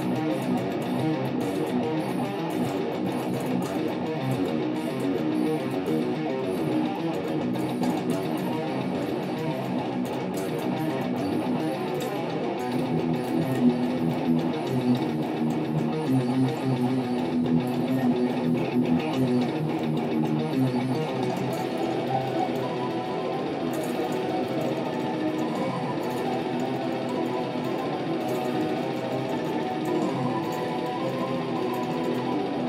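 Electric guitar played through a Line 6 POD X3 amp modeller, fast technical metal riffing along with the band's recorded death metal song. The playing and the backing track run on without a break.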